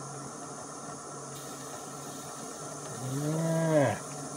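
Gas canister stove burner hissing steadily under the coffee maker. Near the end a man's voice gives a short hummed "hmm" whose pitch rises and then falls.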